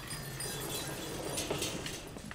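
Wire-mesh dog crate rattling and clinking as it is pushed across a wooden floor, with a couple of sharper metal clicks near the middle.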